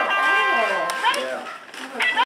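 Battery-powered toy electric guitar sounding a steady electronic note, which cuts off about a second in.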